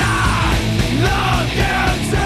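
Loud punk-style rock song with shouted vocals over a full band.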